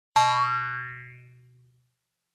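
A single twanging note with a steady low pitch and a sliding overtone, struck just after the start and dying away over about a second and a half, opening the song's intro.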